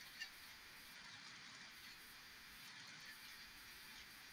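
Near silence: faint hiss of a video-call audio feed, with one brief short blip about a quarter second in.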